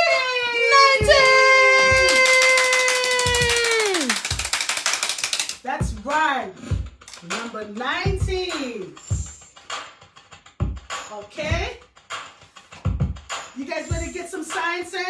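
A voice holds one long note that slides down in pitch about four seconds in, over a rattling hiss, followed by a few short sung or exclaimed phrases and scattered thumps.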